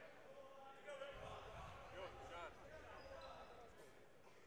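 Faint gymnasium sound during a stoppage in a basketball game: distant voices of players and spectators, with a basketball bouncing on the court.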